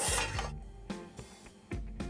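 Soft background music with a steady run of notes, opening with a brief clatter of metal cookware that fades within the first half-second.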